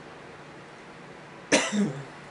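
A woman clearing her throat once, a short, sharp burst about one and a half seconds in, after a quiet moment of room tone.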